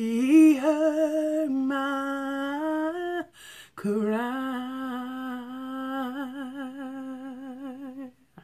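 A woman singing long, drawn-out wordless notes with vibrato, in two phrases with a short breath about three seconds in.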